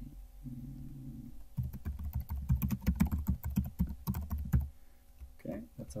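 Typing on a computer keyboard: a quick run of keystrokes lasting about three seconds, starting between one and two seconds in.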